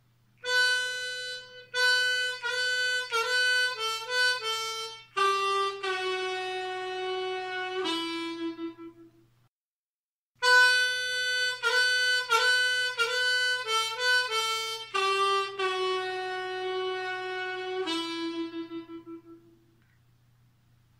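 Diatonic harmonica in A playing a short melodic phrase twice, with a brief pause between. Each time it ends on lower held notes that include draw notes on hole 3 bent down by one and then two semitones.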